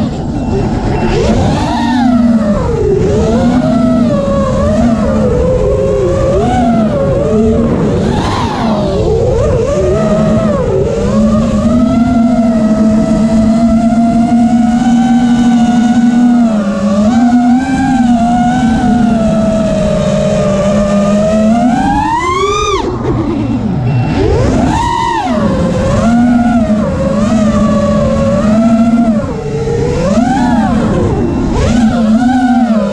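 FPV racing quadcopter's four brushless motors (T-Motor F40 II, 2600kv, on KISS ESCs) whining in flight, the pitch swinging up and down with the throttle. A little past two-thirds through, the whine climbs sharply, then cuts back.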